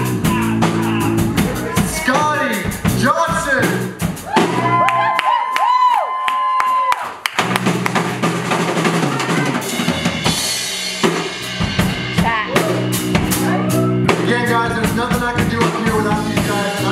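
Live country band playing an instrumental vamp: drum kit with snare and bass-drum hits throughout, under a bass guitar line and guitars. The bass drops out about four seconds in, a long held high note carries the gap, and the full band comes back in about three seconds later.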